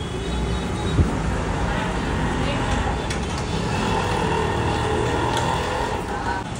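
Steady roadside traffic noise with background voices, and a single sharp knock about a second in.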